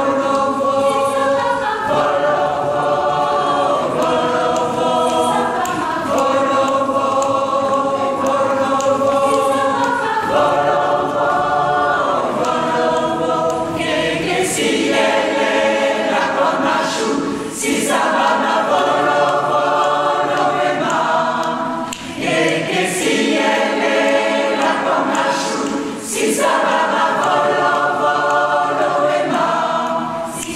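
Mixed choir of men and women singing a cappella in several parts, holding sustained chords that change in phrases of about two seconds, the sound growing brighter and fuller from about halfway through.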